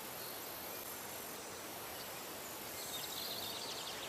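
Steady outdoor background noise, with a faint run of rapid high chirps about three seconds in.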